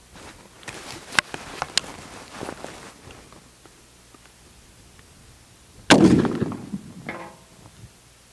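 A single gunshot from a Springfield Model 1884 trapdoor rifle in .45-70, about six seconds in, its report dying away over about a second. It is preceded by a few faint clicks and rustles of handling, and a fainter sound follows about a second after the shot.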